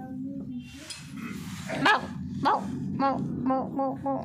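A puppy giving two short, sharp yips about two seconds in, followed by quick, repeated high-pitched coaxing baby-talk from a person.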